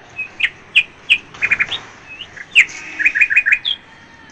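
Birds chirping: a scatter of short, high chirps, with quick runs of three or four notes about halfway through and again near the end.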